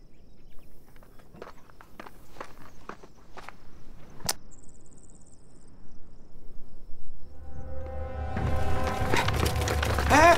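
Soft scattered footsteps on an earth floor, with one sharper click about four seconds in. A tense music cue with a low drone swells in about seven seconds in and grows louder toward the end.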